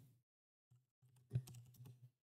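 Faint typing on a computer keyboard: a few scattered key clicks, starting a little way in, with one louder click a little past halfway, as a search query is typed into the browser.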